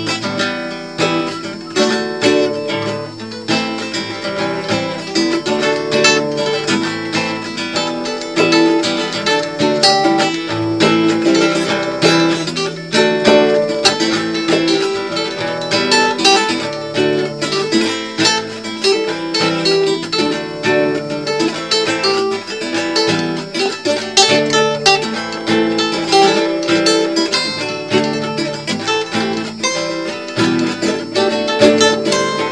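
Acoustic guitar playing an instrumental passage, with quick plucked notes over chords that continue without a break.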